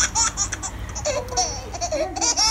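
A young child laughing in a string of short, high-pitched bursts.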